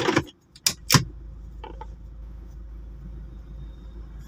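Two sharp clicks in quick succession about a second in, then the steady low rumble of a Toyota Fortuner SUV's engine running, heard from inside the cabin.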